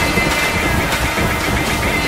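Recorded music: a dense, noisy wash of sound at a steady level, with faint wavering tones in the middle and no words.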